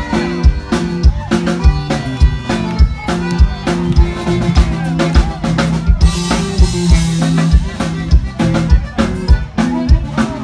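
Live Tejano band playing: a drum kit keeping a steady beat with a strong kick drum, under an electric bass line, electric guitar and keyboards.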